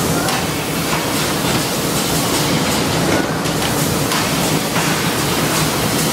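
Steady clatter and hum of automated lighter-assembly machinery, with frequent faint clicks.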